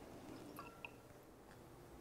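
Near silence: room tone with a few faint small clicks and handling noises in the first second.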